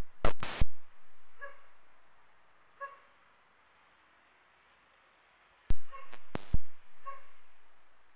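Air-band radio feed with no one talking: two clusters of three sharp microphone-keying clicks, about five and a half seconds apart, each followed by a hiss that fades away. A few faint short blips come in between.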